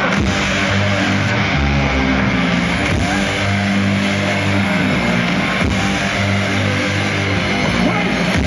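Live rock band playing loud through a concert PA, with electric guitar over a heavy, sustained bass line, heard from within the crowd.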